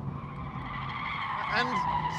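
Audi TT RS's tyres squealing as it corners hard, a steady squeal that sinks slightly in pitch; the car is understeering, its front tyres pushing wide.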